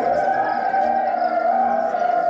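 A voice holding one long, slightly wavering high note over choir singing.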